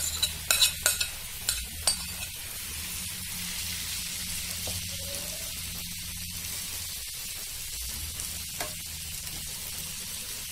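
Marinated paneer, capsicum and onion pieces sizzling in hot oil on a flat non-stick pan while being stirred, a steady frying hiss. A few sharp clicks come in the first two seconds.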